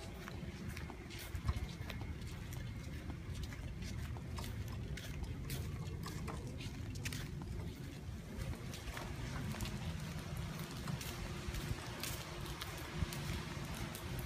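Gusty wind on the phone's microphone, a continuous low rumble, with scattered light irregular ticks and taps.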